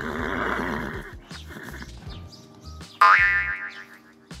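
Horse whinny sound effect: a sudden loud, pitched call about three seconds in, after a quieter rush of noise at the start.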